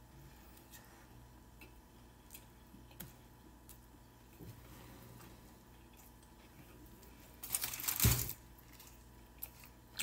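Faint mouth sounds of someone chewing a big mouthful of burrito, with scattered small clicks. About three-quarters of the way in comes a brief louder rustle, under a second long.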